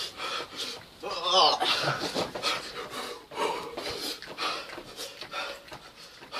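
People panting hard through the mouth after eating a hot chilli, quick repeated breaths to cool the burn, with a short wavering moan about a second in.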